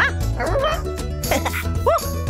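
Lively children's cartoon music with a steady beat, with a cartoon dog's voice yipping about four times over it, each yip a quick rise and fall in pitch.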